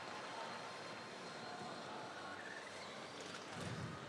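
Faint, steady background noise of an indoor robotics competition arena during a match, with a brief low rumble near the end.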